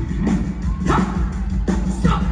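Live band playing in a big hall, heard from the audience: a steady drum beat of sharp hits with short rising vocal yelps about a second in and at the end.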